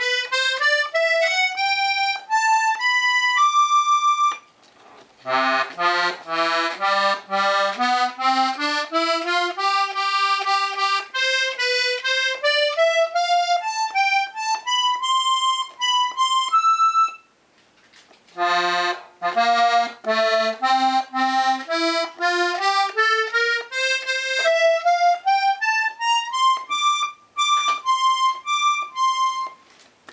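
Strasser Classic Steirische G-C-F diatonic button accordion with three middle-pitch reed sets, played one button at a time. It rises in single stepping notes in three runs, one row after another, breaking off briefly about four seconds in and again a little past halfway.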